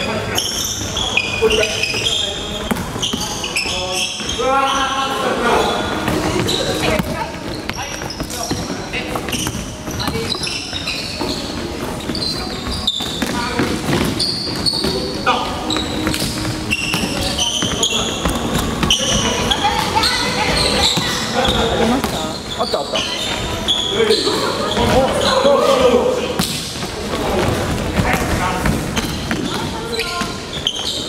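A basketball game on a wooden gym floor: the ball bouncing repeatedly as it is dribbled, with players' voices calling out throughout.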